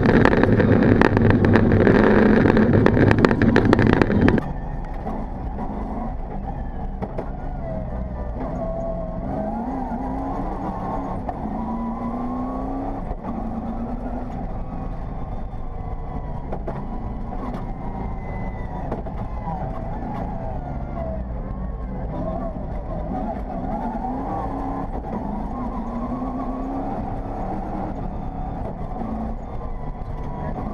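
Rally car engine heard from inside the cockpit at speed on a dirt stage, its pitch rising and falling repeatedly through gear changes and lifts. The first four seconds are much louder and harsher, then it settles to a steadier level.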